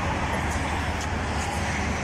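Steady low rumble of background road traffic.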